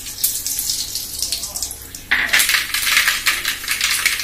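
Mustard seeds popping and crackling in hot oil in a kadai: scattered pops at first, then a louder, denser sizzling crackle from about two seconds in as the seeds splutter.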